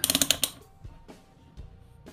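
Rotary range selector switch of an XL830L digital multimeter clicking through its detents as it is turned on, a rapid run of clicks in the first half second.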